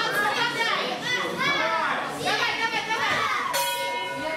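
Several voices calling out at once, many of them high like children's, echoing in a large hall. A steady pitched tone comes in near the end.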